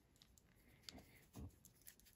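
Near silence with a few faint, light clicks about a second in and again shortly after: a loom hook picking stitches over the pegs of a small plastic flower loom.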